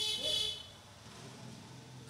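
A brief high-pitched buzzing tone, about half a second long at the start, followed by faint room noise.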